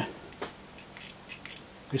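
A sharp click about half a second in, then several fainter light clicks: the buttons of a handheld infrared camera remote being pressed. This remote is a bit dodgy and doesn't always work.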